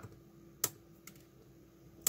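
Flush wire cutters snipping a component lead on a circuit board: one sharp snip about two-thirds of a second in, then a fainter click.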